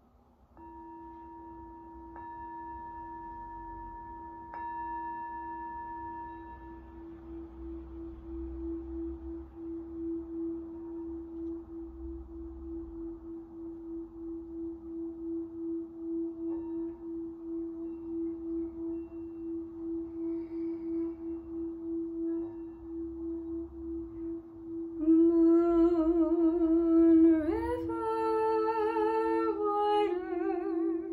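Singing bowl struck with a wrapped mallet and then sustained by rubbing its rim: one steady hum with a slow, pulsing wobble that gradually swells. About 25 seconds in, a woman's voice joins, humming a slow melody with vibrato over the bowl's tone.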